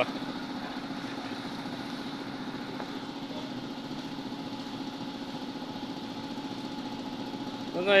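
Car-wash pressure washer's motor and pump running with a steady, even hum.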